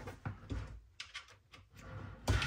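A USB-C cable being handled and its plug pushed into a port: a few short, quiet clicks and rustles, two close together about a second in.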